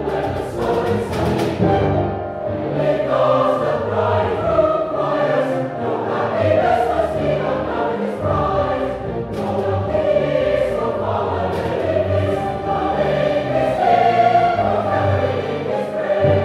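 A choir singing sustained, slow-moving notes over low accompaniment.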